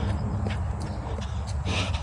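A runner's footfalls on a paved path, an even beat of about three steps a second, over a steady low rumble.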